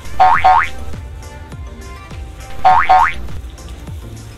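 Background music with a pair of quick rising boing sounds just after the start, and another pair about two and a half seconds in.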